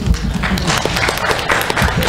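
A small audience applauding, with a few low thumps from a handheld microphone being handled as it is passed on.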